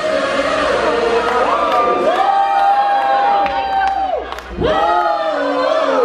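Concert crowd singing along a cappella with the vocalist, after being asked to sing. There is one long held note of about two seconds in the middle, a brief break, then the singing picks up again.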